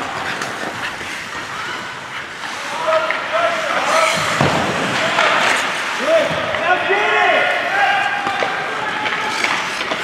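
Indistinct shouting voices at an ice hockey game, with a couple of sharp knocks near the middle.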